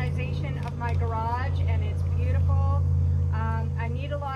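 A woman speaking over a steady low hum that runs unbroken beneath her voice.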